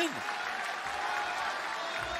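Steady noise from a wrestling arena crowd, with clapping.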